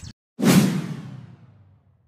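Editing transition sound effect: a whoosh with a low boom that starts suddenly about half a second in and fades away over about a second and a half.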